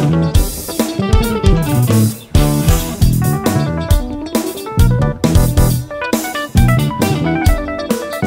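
Instrumental jazz-rock-funk fusion: electric guitar playing quick runs of notes over bass and drum kit, with a brief break about two seconds in before the band comes back in.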